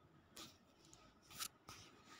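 Near silence: room tone with a few faint, short rustles.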